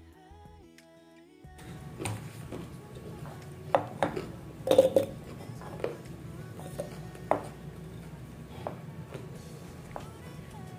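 Background music for about the first second and a half, then a run of sharp knocks and clatter as carrot slices go into a clear blender jar and the jar is handled, over a steady low hum. The loudest knocks come near the middle.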